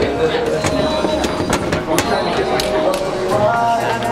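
Busy crowd chatter with background music, cut through by many irregular sharp clicks and knocks.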